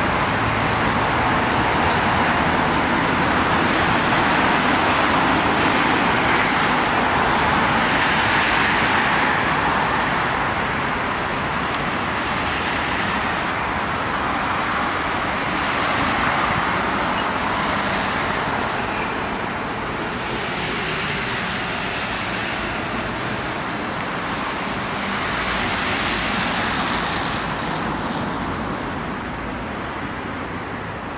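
Steady road traffic noise from a busy multi-lane city road, swelling several times as vehicles pass.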